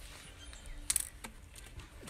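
Scissors and an empty plastic water bottle being handled on concrete: two brief clicks about a second in, over a faint outdoor background.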